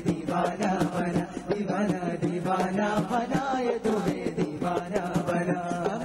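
Qawwali singing: voices hold and bend long sung phrases over a steady low drone, with regular percussion strokes throughout.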